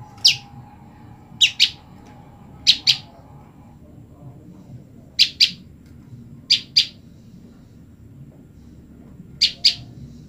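Female common tailorbird calling for her mate: short, sharp, high chip notes, one single note and then five quick pairs, repeated every second or two.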